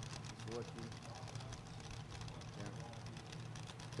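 Quiet background: a faint steady low hum with brief faint distant voices, between stretches of commentary.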